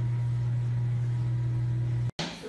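A steady low hum, unchanging in pitch and level.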